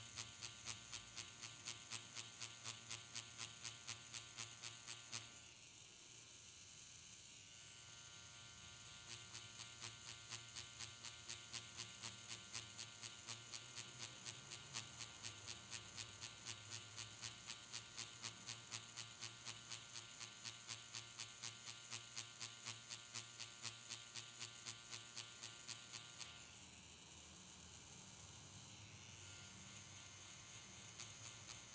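Permanent-makeup pen machine with a single-needle cartridge buzzing faintly as it shades latex practice skin. The buzz pulses in a quick regular rhythm of about three pulses a second. The pulsing stops twice, for a few seconds about five seconds in and again near the end, leaving only the steady buzz.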